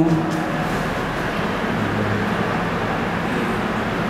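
Steady rushing background noise with a faint low hum underneath, unchanging throughout.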